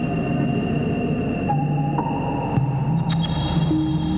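Ambient electronic music: layered sustained synth tones over a low drone. The held notes step to new pitches about a second and a half and two seconds in, and a high tone enters about three seconds in.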